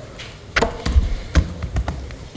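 A handful of irregular knocks and thuds picked up by lectern microphones as laptops are lifted off and set down on the lectern.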